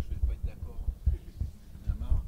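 Handling noise of a live handheld microphone as it is passed from hand to hand: a run of irregular low thumps and bumps.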